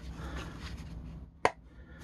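Hard plastic toy playset parts being handled and pressed together, with faint rubbing, then one sharp click about a second and a half in as the forge piece snaps into its base.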